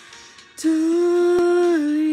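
A woman's solo singing voice comes in about half a second in and holds one long sustained note, dropping slightly in pitch near the end. Faint background before it.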